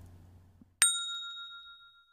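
A single bell ding from the subscribe-button animation's notification-bell sound effect, struck once about a second in and ringing out as it fades.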